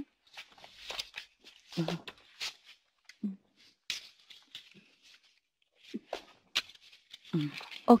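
Playing cards being handled and shuffled: quiet, scattered papery rustles and clicks, with a few brief murmured voice sounds in between.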